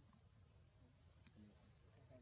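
Near silence: faint background hum with a couple of faint ticks.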